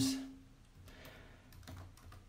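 Faint, sparse clicks and crackles, with the last word of a voice trailing off at the start.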